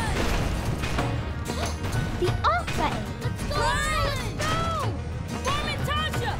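Busy cartoon soundtrack: background music with crashes and clanks from the malfunctioning sock machine, and short rising-and-falling wordless yelps from the characters from about halfway in.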